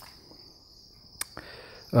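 A faint, steady high-pitched tone, with one sharp click a little over a second in.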